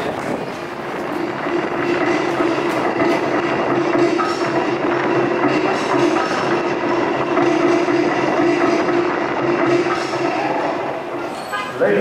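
Large stadium crowd cheering and shouting, a dense wash of voices, with a steady held note running through most of it.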